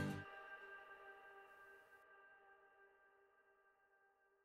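The song's last acoustic guitar chord ringing out, fading to near silence within about two seconds, with its faint tones lingering on after.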